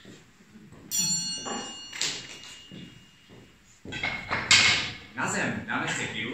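A single bright metallic ring, like a small bell or a struck glass, about a second in, dying away over two to three seconds. Voices follow, and a sudden loud sharp burst just after the middle is the loudest sound.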